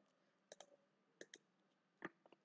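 Faint clicks of a computer keyboard and mouse, heard as two quick pairs about half a second and a second and a quarter in, against near silence.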